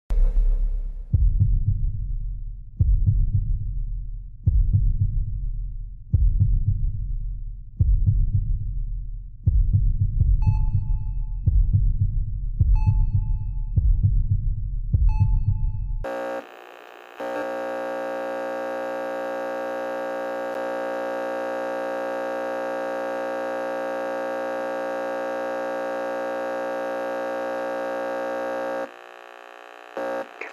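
Trailer sound design: deep low thuds pulsing about every second and a half, each fading away, with a short high ping joining each thud from about ten seconds in. At about sixteen seconds they give way to a steady, even drone that holds until it cuts out near the end.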